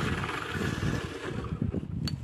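Wind rushing over the microphone of a moving bicycle rider, a steady hiss with an uneven low rumble of gusts.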